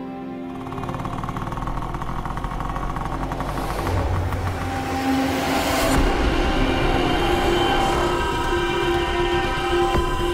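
Background score of sustained tones over a motorcycle engine running. A rising whoosh swells and cuts off about six seconds in.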